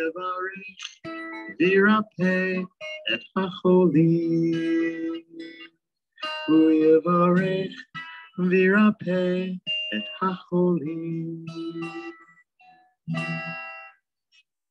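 Singing of a liturgical melody to acoustic guitar, in phrases with held notes and short breaths between them. The last phrase comes near the end and then stops.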